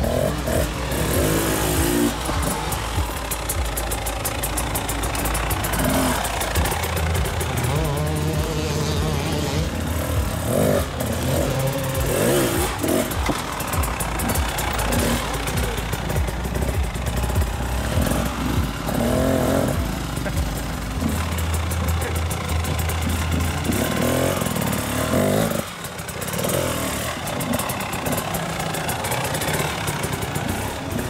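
Off-road enduro motorcycle engines running at low revs with irregular throttle blips, as a rider eases the bike over rocks at walking pace. The engine note drops away briefly a few seconds before the end.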